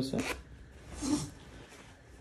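Metal YKK zipper on the fly of a pair of jeans being pulled: a short zip near the start, then a fainter zip about a second in.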